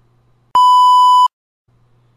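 A censor bleep: one steady, slightly buzzy electronic beep about three-quarters of a second long, starting and stopping abruptly.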